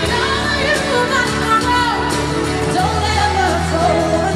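Live pop concert recorded from the audience: a woman sings ornamented vocal runs over a live band's steady accompaniment.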